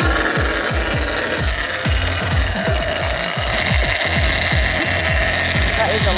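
Big-game trolling reel screaming as a hooked marlin runs, line peeling off against the drag in a steady whine that grows clearer about halfway through. Background music with a regular low beat plays underneath.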